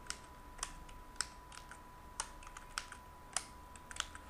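Faint keystrokes on a computer keyboard: uneven single key clicks, two or three a second, as short numbers are typed in. A faint steady high tone runs underneath.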